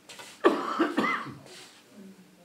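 A person coughing, in two bursts about half a second apart.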